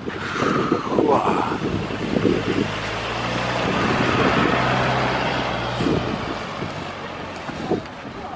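A van drives past on a cobbled road, its engine hum and tyre noise swelling to a peak about halfway through and fading as it moves off.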